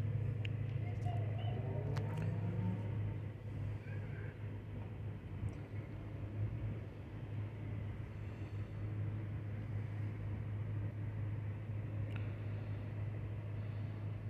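Steady low hum of an idling car, heard from inside the cabin, with a few faint clicks.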